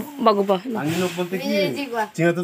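A man's voice talking, with a short breathy hiss about a second in.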